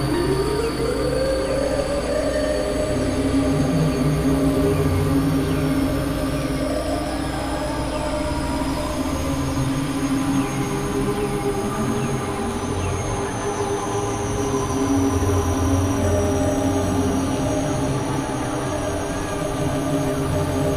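Experimental electronic drone music from synthesizers: layered sustained tones over a dense low rumble, with slow upward pitch glides near the start and again around the middle, and faint high tones sliding downward.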